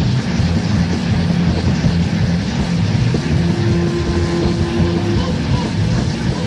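Live rock band music in a droning passage: a dense, low, sustained drone with a held higher note in the middle.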